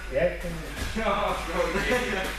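Only speech: people talking, not clear enough for the words to be made out.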